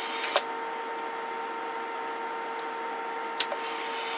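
Galaxy 98VHP radio receiver putting out a steady static hiss with a faint steady whine through its speaker. Two sharp clicks, one just after the start and one near the end.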